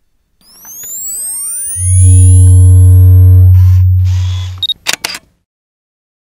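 Production-company logo sting: rising swooshing tones build up, then a loud, deep bass tone with a chord above it holds for about two and a half seconds and fades. A brief hiss and a few sharp clicks follow about five seconds in.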